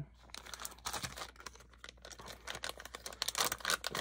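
Plastic soft-plastic bait bag crinkling as it is handled and opened, in irregular clusters of crackles that grow busier near the end.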